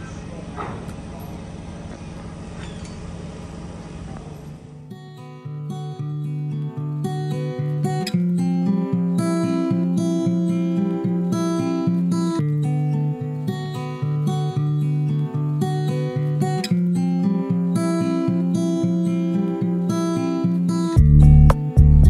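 A steady low hum with background noise for about five seconds, then background music of plucked acoustic guitar, with heavier bass notes coming in near the end.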